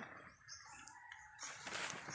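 Faint quiet with a distant bird calling once in the middle.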